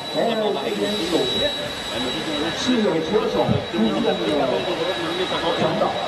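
Several racing motorcycle engines at high revs, overlapping, their pitch rising and falling as the bikes pass.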